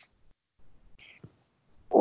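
A short pause between spoken answers, holding only a brief soft whispered hiss about a second in; speech starts again at the very end.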